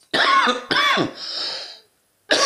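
A man coughing twice into his hand, the second cough shorter than the first.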